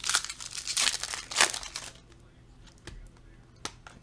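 Foil wrapper of a Donruss Optic basketball card pack crinkling and tearing as it is handled, busiest in the first two seconds. After that come a few light clicks of cards being handled.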